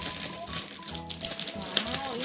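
Background music and a voice, with light crackling of plastic wrapping as a packaged toy is handled.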